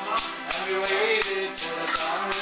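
A Newfoundland folk tune on button accordion and acoustic guitar, with an ugly stick beating time: sharp jingling strikes, about three a second.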